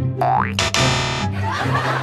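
Comic cartoon sound effect over background music with a repeating bass line: a quick rising whistle-like glide, then a buzzy held tone lasting about half a second.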